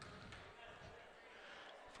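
Near silence: faint gymnasium room tone.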